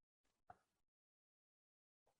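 Near silence, with one faint short sound about half a second in.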